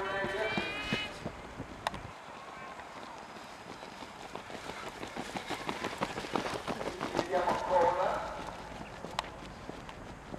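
Running footsteps of a pack of distance runners on a synthetic track passing close by: a quick, uneven patter of many feet that builds to its loudest about seven to eight seconds in. A man's voice at the very start and a short call from a voice near the loudest point.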